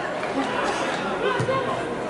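Indistinct, overlapping shouts and chatter of players and onlookers at a football match, with one sharp knock about one and a half seconds in.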